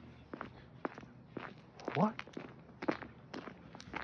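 Footsteps at a steady walking pace, about two steps a second.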